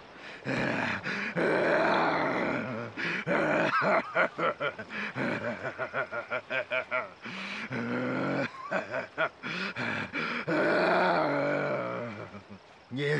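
A man's wild, wordless screaming and groaning: long held cries, a fast run of short gasping shouts in the middle, then more long cries near the end.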